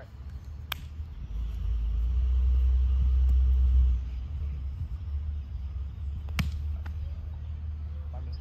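Two sharp smacks of a volleyball being hit, one just under a second in and one about six seconds in, over a low rumble that swells for a couple of seconds and drops off suddenly about halfway through.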